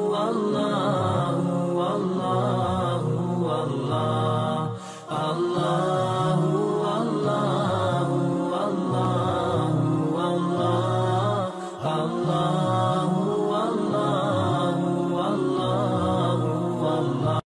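Melodic vocal chanting that runs continuously, with two brief pauses, about five seconds in and again near the twelve-second mark.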